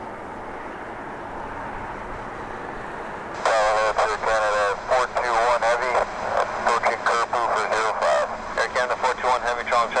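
Steady jet engine noise from an EVA Air Cargo Boeing 777 freighter's GE90 engines as it turns onto the runway. About a third of the way in, a loud air traffic control radio transmission comes in over it and runs on.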